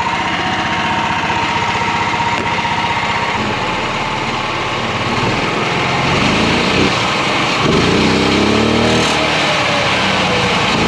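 Harbor Freight Predator 420 single-cylinder engine in a golf cart, exhausting through a small car muffler, running steadily under load as the cart drives. About seven seconds in it revs up and its pitch climbs for a couple of seconds as it is floored.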